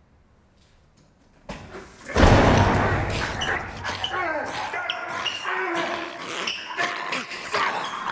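A sudden loud crash about two seconds in, then strained shouting and grunting from a man grappling with a growling zombie.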